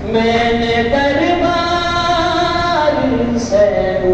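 Men's voices chanting soz-khwani, the unaccompanied Shia mourning elegy, through a microphone in long held notes that step up and down in pitch.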